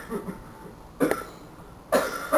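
A person coughing: two short, sharp coughs about a second apart.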